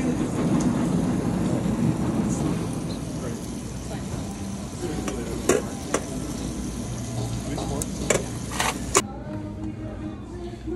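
Metal ladle scooping porridge from a stainless-steel pot into a bowl, scraping and stirring, with a few sharp clinks of metal and crockery in the second half, over a busy dining-hall background.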